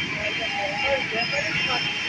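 Steady street noise of traffic, with distant voices calling out over it.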